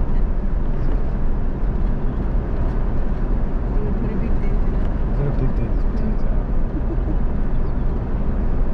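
Steady road noise inside a moving vehicle's cabin: engine and tyres running on a tar road at an even pace.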